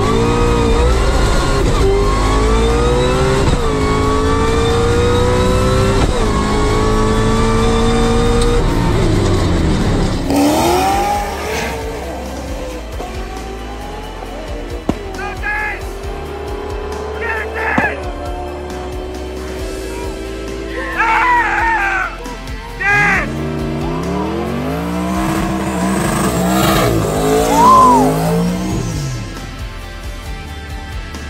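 A Whipple-supercharged 4.6-litre V8 of a 2003 Mustang Cobra at full throttle on a drag-strip launch, heard from inside the car. Its pitch climbs and drops back at each of several quick six-speed gear shifts about two seconds apart. After about ten seconds this gives way to quieter, uneven engine and tyre sounds.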